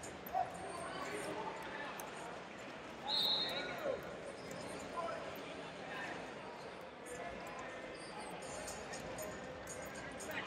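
Ambience of a large tournament hall: distant voices of coaches and spectators calling out across the room, with a short high-pitched tone about three seconds in.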